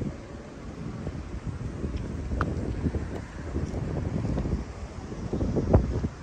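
Wind buffeting the microphone outdoors: an uneven low rumble that rises and falls in gusts, with a brief thump near the end.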